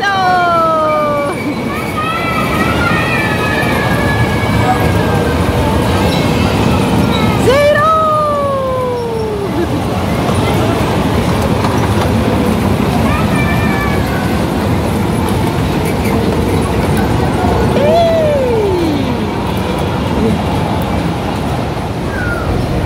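A children's car ride running in circles on its track, with a steady rolling rumble. Voices call out several times over it in long cries that slide down in pitch.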